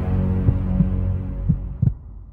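Cinematic logo-intro sting: a low droning chord with a few dull low thuds, fading out toward the end.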